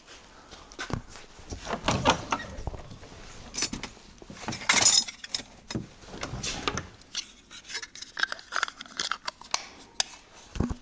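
Loose metal parts and tools clinking and clattering irregularly as a hand rummages through the cluttered boot of a Trabant 601, loudest about halfway.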